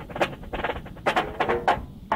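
Drum corps battery drumline playing a choppy, segmented passage of separate accented strokes, several a second, on an old field recording.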